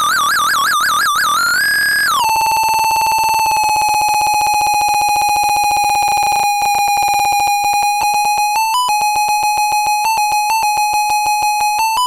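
Circuit-bent toy typewriter's electronic tone, warbling at first, then jumping up and dropping about two seconds in to a lower, steady pitch that is chopped into very fast stutters. In the last third it settles into an even pulsing rhythm with short upward pitch blips, the typewriter's sound being triggered by a Korg Monotribe.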